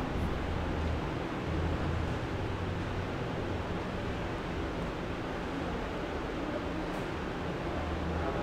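Steady background hiss with a low hum underneath: the recording's noise floor, with no other distinct sound.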